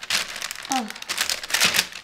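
Parchment paper crinkling and rustling under hands as pieces of sticky hard candy are picked up off it, a dense run of small crackles.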